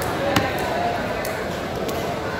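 One sharp knock on a wooden tree-trunk chopping block about a third of a second in, followed by a couple of fainter knocks, as tuna is cut and handled on it.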